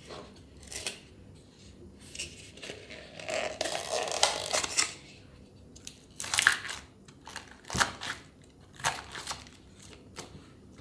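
Plastic fork jabbing into a paper cup of lettuce, cucumber and cherry tomato salad, with three sharp, crunchy stabs in the second half. Before them come a few seconds of rustling and crinkling.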